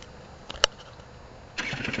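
A sharp click about half a second in, then the Yamaha TZR 50's two-stroke engine, bored out to 75cc, starts near the end and runs with rapid, evenly spaced firing.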